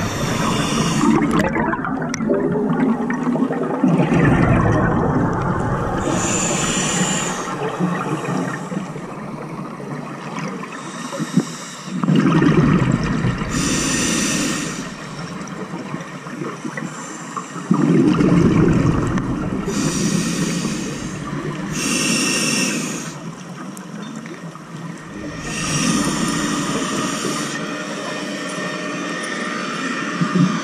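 Scuba breathing through a demand regulator underwater: a hiss on each inhale, then a loud rush of bubbles on each exhale, repeating every several seconds.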